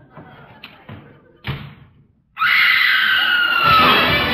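A door slams shut about a second and a half in. A moment later a loud musical bridge starts, its melody falling.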